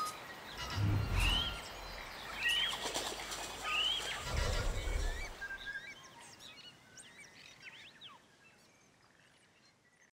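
Bird calls from an animated ident: three rising whistles about a second apart, over low thuds, with small chirps and clicks scattered around them. The sound fades out over the second half.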